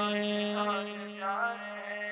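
Background song: a male voice sings a long held note with gliding ornaments, over a steady drone.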